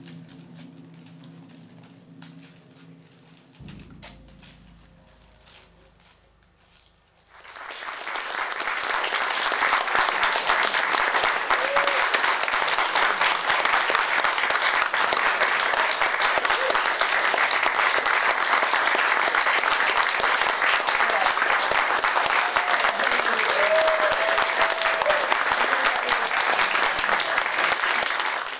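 The closing held chord of the music fades out in the first few seconds; after a short near-quiet pause, an audience bursts into steady applause about seven seconds in and keeps clapping to the end.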